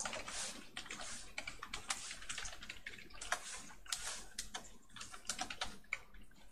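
Typing on a computer keyboard: an irregular run of quick key clicks with short pauses between bursts.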